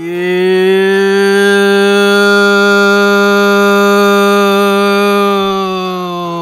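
One long, loud held note, voice-like, at a low steady pitch for several seconds. Near the end it slides down in pitch and fades out.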